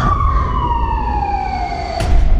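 A single siren-like wail sliding slowly down in pitch over a deep, steady low rumble, part of a film trailer's sound design.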